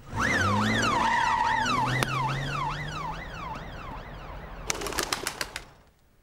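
Cartoon police car siren wailing up and down about twice a second, loud at first and then fading away. Near the end there is a quick run of sharp clicks.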